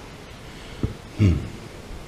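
A man's short "hmm" falling in pitch, just after a brief thump.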